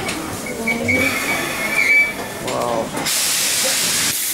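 Island Line class 483 electric train, former London Underground 1938 tube stock, coming to a stop with a high, steady squeal as it slows. About three seconds in, a sudden loud hiss of compressed air comes as the air-operated doors open.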